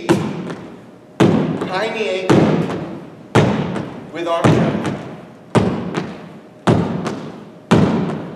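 Sneakered feet landing hard on a wooden gym floor during high-knee skips, a thud about once a second, eight in all, each echoing in the large hall.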